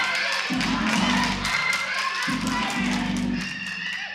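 Soul-gospel band music: long low bass notes of about a second and a half each under quick percussive strokes, with voices over it.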